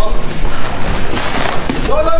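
Background music with a heavy, steady low end, mixed with voices.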